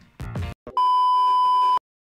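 A steady, high electronic beep tone about one second long, starting and cutting off abruptly. It is a single pure tone of the kind used as an edited-in bleep.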